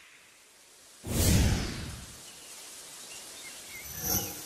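Whoosh sound effect with a deep boom about a second in, fading over about a second. It is followed by a steady hiss of ambience with a few faint chirps, and a second short whoosh hit at the end.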